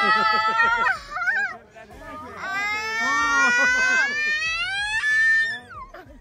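People screaming with long, high-pitched held cries: one in the first second, then a longer one that climbs in pitch for about three seconds. The passengers are braced in the basket as the hot air balloon touches down.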